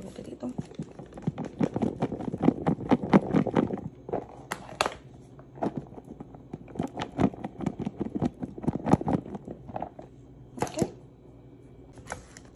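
Rapid light tapping and knocking of a plastic feta tub as crumbled feta is shaken out of it onto pasta salad, thickest in the first few seconds and then thinning. A brief scraping rasp comes about four and a half seconds in and another near the end.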